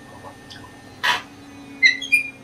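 African grey parrot making one short, harsh, noisy call about a second in, then a brief high whistled note near the end.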